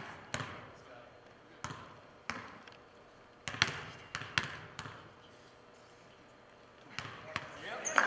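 Basketballs bouncing on a gym floor, about nine separate echoing bounces at uneven intervals over the first five seconds, in a large hall. Voices rise near the end.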